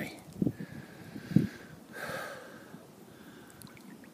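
A man breathing and sniffing, with two short low thumps about half a second and a second and a half in, then a longer breath out about two seconds in.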